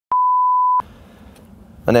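A single steady electronic beep, one pure high tone lasting well under a second, cutting off sharply, followed by low background hiss.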